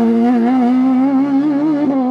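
Sports-prototype race car's engine held at high revs, a loud, steady high-pitched note that wavers slightly and climbs a little in the first half-second.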